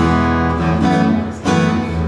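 Acoustic guitar played live, chords strummed and let ring, with a new strum about every three-quarters of a second.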